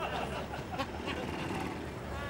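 Low, steady rumble of street traffic, with a few faint clicks and faint voices.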